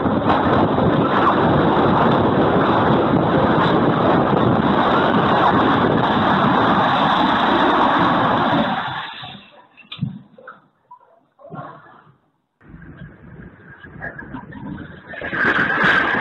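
Storm noise: a loud, steady rush of wind and heavy rain for about eight seconds, then it drops away suddenly to a few scattered faint knocks, before a quieter rushing sound builds up again near the end.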